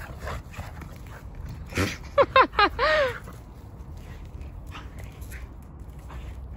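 Australian Shepherds at rough play, one dog letting out a quick run of four or five high yips about two seconds in, followed by a short whine that rises and falls.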